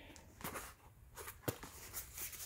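A cardboard box being lifted out of a larger cardboard shipping carton: faint cardboard scraping and rubbing with a few light knocks, the sharpest about one and a half seconds in.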